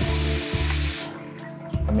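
Toto basin tap running at strong pressure, water hissing into a ceramic sink, then shut off abruptly about a second in. The strong flow shows good water pressure.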